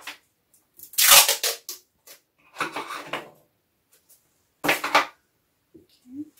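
Sticky tape pulled off the roll in three short, loud crackling strips, about a second apart.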